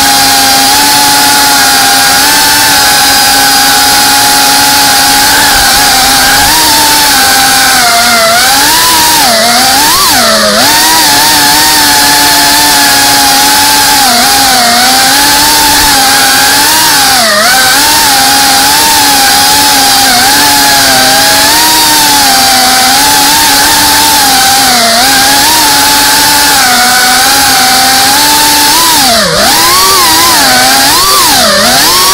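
FPV racing quadcopter's brushless motors and propellers whining in flight, recorded loud and close on the onboard camera. The pitch holds steady for the first few seconds, then swoops down and up with throttle changes, with sharp drops about ten seconds in and near the end.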